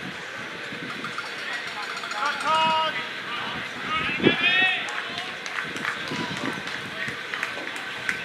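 Ballfield voices: players and spectators shouting and chattering, with one long held shout about two and a half seconds in and another call a little after four seconds. A single sharp smack, the loudest sound, comes about four seconds in.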